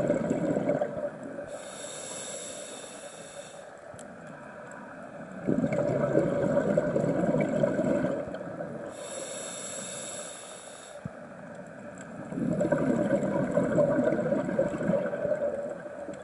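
Scuba breathing through a regulator underwater: a high hiss on each inhalation alternates with a longer bubbling rush on each exhalation, two full breaths about seven seconds apart.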